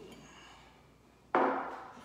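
A single sharp knock on a wooden tabletop about a second and a half in, fading quickly, as bar gear is handled on the table.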